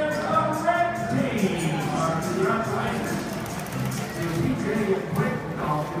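Stadium public-address voice over music and crowd noise during a between-innings race at the ballpark.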